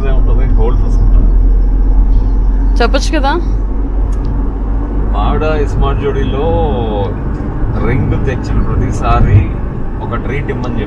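Steady low rumble of a car's cabin noise while driving, road and engine sound heard from inside the car, under a man's voice talking in short stretches.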